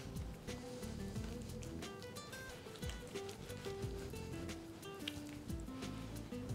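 Soft background music with a melody, with light knife clicks on a plastic cutting board as a raw chicken breast is sliced open.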